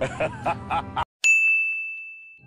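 Background music and a voice cut off abruptly about a second in. A single bell-like ding follows, struck once and ringing on at one steady high pitch as it slowly fades.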